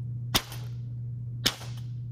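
Two metal balls smashed together through a sheet of paper: two sharp cracks about a second apart. The collision's kinetic energy comes out as sound and as heat that scorches a small hole in the paper.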